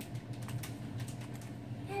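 Light, irregular clicks and crinkles of fingers handling a cellophane-wrapped pack of cards and envelopes.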